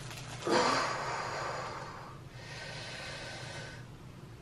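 A woman in labour breathing heavily through a contraction: a long, forceful breath about half a second in that begins with a brief vocal sound, then a second, quieter breath that ends just before the end.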